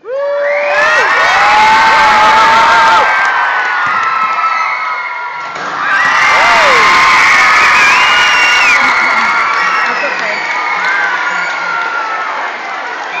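A large crowd of children screaming and cheering, erupting suddenly. It eases off about five seconds in, then surges again a moment later before tailing down.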